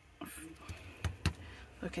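Fingers pressing a paper die-cut down onto a card, with two light taps about a second in. A short hum comes just before, and a woman starts speaking near the end.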